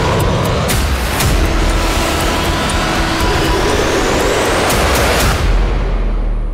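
Fighter jet engine noise mixed with dramatic music. A riser sweeps steadily upward in pitch over the first few seconds, with a few sharp hits.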